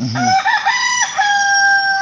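A rooster crowing once: a few stepped notes, then one long high note held for nearly a second.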